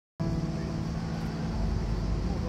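Road traffic: a steady low engine drone from passing or idling vehicles, starting a moment in.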